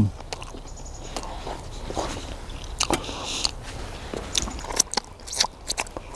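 A man chewing a mouthful of wild garlic (ramsons) leaves close to the microphone, with irregular short clicks from the chewing.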